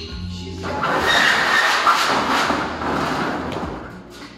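A large sheet-metal duct elbow scraping and rumbling as it is shifted over the concrete floor: a rough, loud noise lasting about three seconds. Background music plays underneath.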